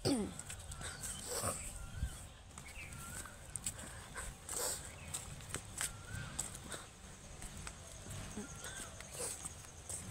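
A short wavering animal call repeats faintly every second or two, over scattered clicks and scuffs from walking on dry ground. A falling call sounds right at the start.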